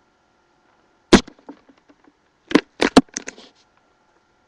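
A child makes a few loud, sharp, clipped sounds right at the webcam microphone: one about a second in, then three quick ones about a quarter second apart near the end.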